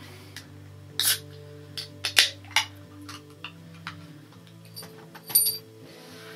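Beer can being handled and its tab cracked open: several sharp clicks and short hissing bursts, the loudest about two seconds in, over quiet background music with held notes.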